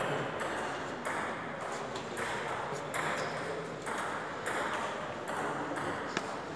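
Table tennis ball clicking against paddles and table in an ongoing rally, a string of light sharp clicks roughly two a second.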